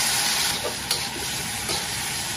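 Chicken pieces sizzling in hot oil in a wok with chili bean paste, a steady frying hiss as the cold meat hits the oil, with one short sharp knock about a second in.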